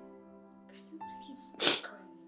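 Soft sad background music with held tones, over which a woman sniffs and sobs in short breathy bursts while crying. The loudest, a sharp sniff, comes about a second and a half in.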